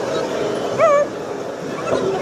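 A short, high-pitched yelp, about a second in, over a steady background of voices and rink noise.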